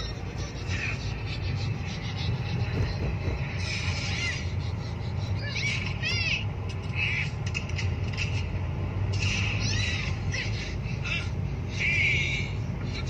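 Inside a moving Suzuki car: a steady low engine and road rumble while driving, with short high-pitched squeaks every second or two.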